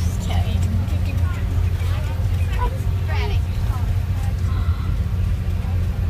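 Steady low road rumble inside a moving vehicle's cabin, with faint chatter of passengers over it.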